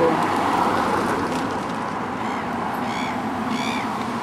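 Steady outdoor background noise, joined in the second half by an animal giving about four short, arching calls, each a little over half a second apart.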